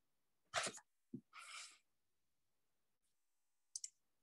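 A person sneezes once, about half a second in, followed by a short breathy sound, heard through a video-call microphone. Two quick clicks come near the end.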